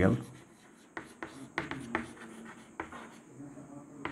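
Chalk writing on a chalkboard: a handful of short, irregular scratches and taps as a word is written out by hand.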